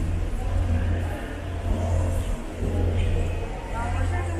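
Steady low rumble, with faint chatter of a crowd of visitors over it.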